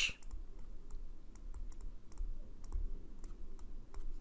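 A scatter of small, irregular clicks and taps from a stylus on a tablet while a word is handwritten, over a low background rumble.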